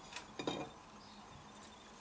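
A few faint clicks and light knocks from a ceramic plate being handled and turned over by hand, two near the start and a fainter one later, against quiet room tone.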